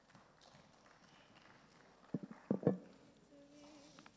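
A quick run of about four knocks a little over two seconds in, against a quiet hall, with a faint steady hum near the end.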